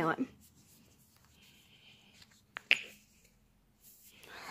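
A faint sniff at a tube of body lotion held to the nose, then two sharp clicks in quick succession about two and a half seconds in.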